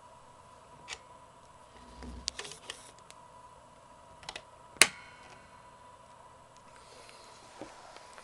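Small clicks and handling noise as a gold right-angle jack plug is pushed into an electric guitar's output jack, with one sharp, loud click about five seconds in.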